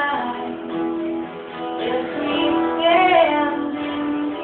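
A woman singing a slow song live, accompanied by two acoustic guitars.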